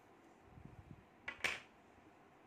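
Quiet handling of a small crocheted piece and crochet hook, with one short soft rustle about one and a half seconds in.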